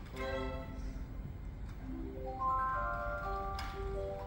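Live opera orchestra playing, with short bowed string notes at first; about halfway in, a run of higher held notes enters, stepping upward.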